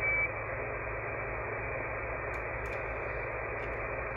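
Steady static hiss from a KiwiSDR web receiver's AM audio on the 11-meter band at 26.765 MHz, with no station audible through the noise. A short high beep sounds at the very start, and a few faint clicks come about halfway through.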